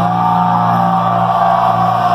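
Live pop-punk band played loud through a festival PA, heard from within the crowd: one long high note held, slightly sliding up into pitch, while the low chord beneath it fades away near the end.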